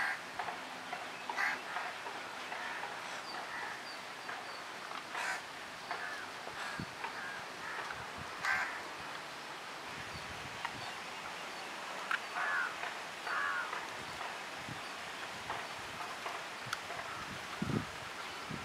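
Birds calling now and then: short calls scattered through, over a steady outdoor background hiss.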